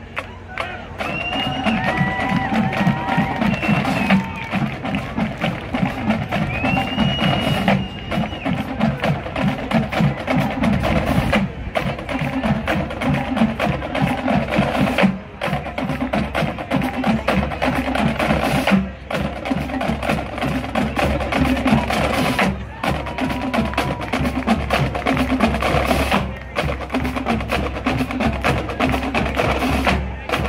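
Marching band drumline playing a steady, repeating marching cadence on drums.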